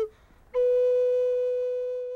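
A vertical end-blown flute playing: one note ends right at the start, and after a brief gap a single long note is held, slowly fading.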